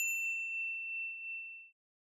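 A single bright ding at one high pitch, ringing on and fading out over about a second and a half: the bell sound effect of a 'like and subscribe' button animation.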